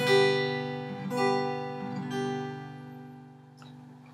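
Acoustic guitar strummed on a G major chord: three strums about a second apart, the last left to ring and fade, with a faint click near the end.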